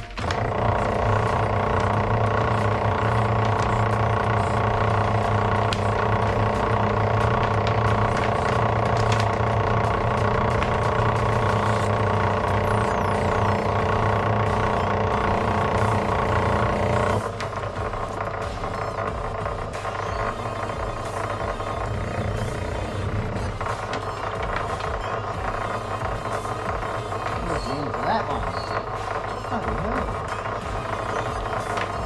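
Electric-motor-driven wire stripping machine switched on and running with a steady hum while insulated copper wire is fed through its rollers. About seventeen seconds in the sound drops to a quieter steady running.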